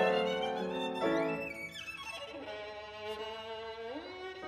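Violin with piano accompaniment: two strong chords, then a fast run climbing high and falling back, then a long held violin note with vibrato that steps up to a new note near the end.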